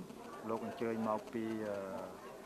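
Speech only: a man speaking.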